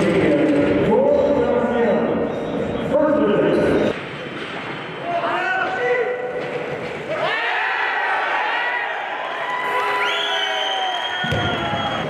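Weightlifting venue sound: voices and drawn-out shouts, with the thud of a loaded barbell's bumper plates dropped onto the lifting platform. The sound changes about four seconds in, from the warm-up room to the competition hall.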